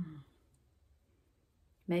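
Fingertips tapping lightly on the body, EFT tapping at about four taps a second, ending right at the start with a short voiced sound. Then near quiet until a woman starts speaking near the end.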